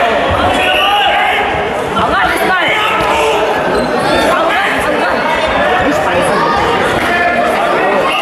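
Many people talking at once in a large sports hall, with reverberant crowd chatter and a few dull thumps.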